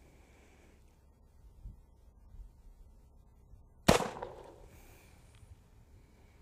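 A single shot from a .45 Colt single-action revolver, about four seconds in, with an echo trailing off over about a second.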